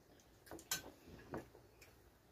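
A few faint, short clicks and ticks, about four in two seconds, from people eating at a table with metal cutlery and plates.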